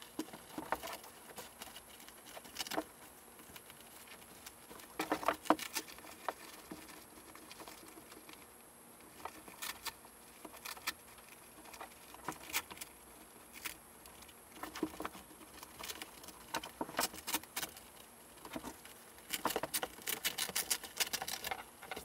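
Hands pressing the Velcro-backed plate system into a nylon M1955 flak vest: irregular fabric rustling with clusters of sharp crackling clicks, loudest about five seconds in and again near the end.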